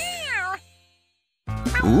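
A domestic cat meows once, a short call that rises and then falls in pitch, over background music that then drops out into a brief silence.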